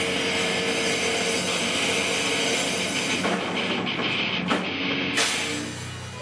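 Live heavy metal band playing: distorted electric guitars over a drum kit with cymbal crashes, the music dropping in level near the end.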